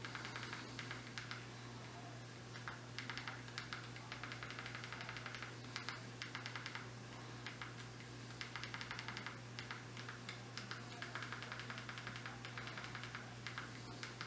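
Runs of quick clicks from working the Fire TV remote to step the cursor across the on-screen keyboard letter by letter, in bursts of a second or two with short pauses between, over a steady low hum.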